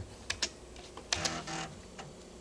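A few keystrokes on an IBM PC's buckling-spring keyboard, sharp separate clicks: a number key and Return pressed to pick a menu option.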